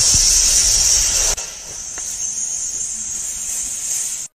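A clay figurine fizzing with a steady high hiss as air bubbles escape from it. The hiss is loud at first and drops suddenly to a softer fizz about a second and a half in.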